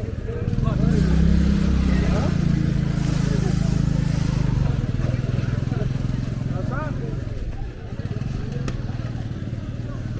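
Engine of a motorised cargo tricycle running close by, strongest in the first few seconds and then fading as the tricycle moves off down the street, with market voices over it.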